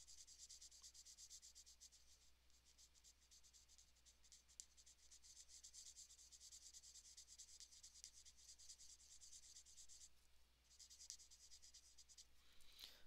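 Faint scratching of a marker tip stroking quickly back and forth across paper, with a brief pause about ten seconds in.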